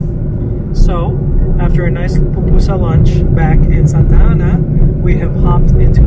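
Steady low road and engine rumble inside a moving car's cabin, with voices talking over it from about a second in.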